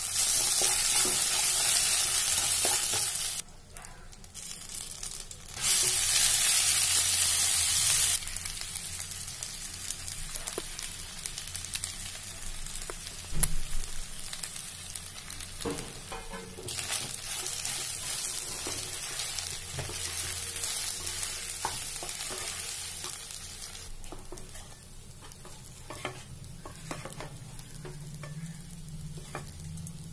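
Hot oil sizzling loudly around frying lentils, dried red chilli and curry leaves in a nonstick pan while a wooden spatula stirs them. After about eight seconds the sizzle drops and the spatula's scraping and tapping in the pan take over as rice is mixed in.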